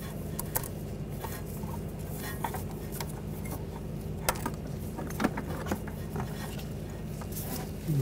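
Faint scattered clicks and taps of an ABS sensor's plastic connector and wire being handled and routed by gloved hands, over a steady low hum.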